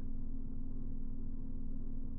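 A steady low hum with a constant pitch that runs on unchanged beneath the recording's speech.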